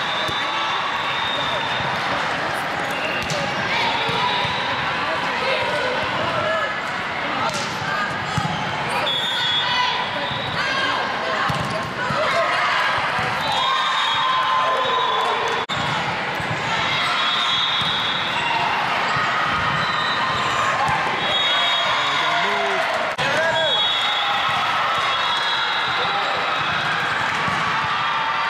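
Volleyball being served, struck and bouncing on a hard indoor court, with sharp knocks now and then, over steady chatter and calls from many players and spectators in a large hall. Short shrill tones come and go throughout.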